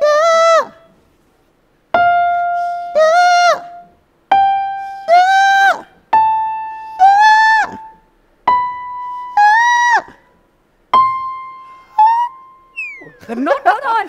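Electric keyboard playing single notes that climb step by step. After each one a man sings the same pitch back in high falsetto on "yeah", rising through about E5 to A5 and above in a vocal-range test. Near the end there is a shorter strained attempt, a falling slide, then a jumble of voice as the top of his range gives out.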